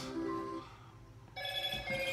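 Steady electronic musical tones in a pause of speech: a low held note at first, then a bright ringtone-like chord of several pitches that starts suddenly about two-thirds of the way in.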